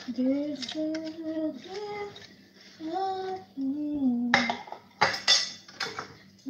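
A woman singing a slow tune in long held notes. From about four seconds in, kitchen utensils and dishes clatter with sharp clinks.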